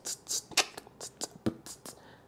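A person beatboxing, imitating a bass-heavy beat with the mouth: quick hissing and clicking hits about four a second, with a deeper thump about three quarters of the way through.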